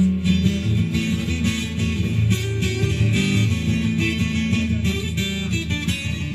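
Acoustic guitar playing a steady run of chords on its own, with no singing.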